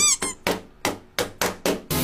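A short note with a bending pitch at the start, from an Otamatone, then a run of about six sharp knocks or taps over a second and a half.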